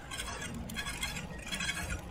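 Road bike disc brake rubbing as the wheel turns: faint metallic scraping of rotor against pad that comes and goes several times. The rider puts it down to the caliper alignment shifting on a big descent.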